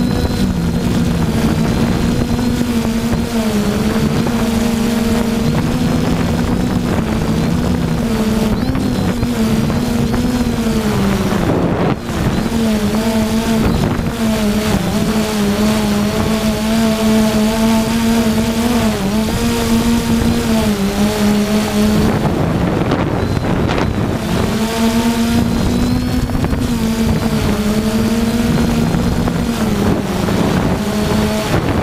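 3DR Iris+ quadcopter's electric motors and propellers giving a steady hum, heard close from its onboard camera as it hovers. The pitch wavers as the motors adjust and dips briefly a few times, with wind rushing over the microphone.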